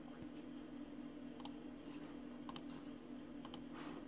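A few faint computer-mouse clicks: a single click, then two quick double-clicks, over a steady low hum.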